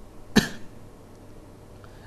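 A single short cough about a third of a second in, then low room noise.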